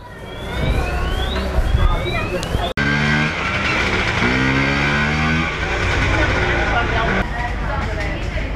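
Busy street-market ambience with an engine passing close, its pitch rising and falling, over the chatter of shoppers and vendors. The sound breaks off abruptly a little under three seconds in and picks up again at once.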